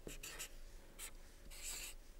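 Marker pen writing on a board: a few short, faint scratching strokes.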